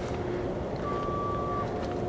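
A vehicle's backup alarm sounds one long beep, a little under a second, starting just before the middle, over a steady rumble of yard and vehicle background noise.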